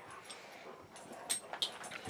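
Faint sounds of dogs moving about with their toys, with two short clicks a little over a second in.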